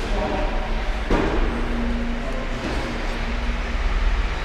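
Lamborghini Gallardo's V10 engine idling with a steady low rumble. There is a single sharp knock about a second in.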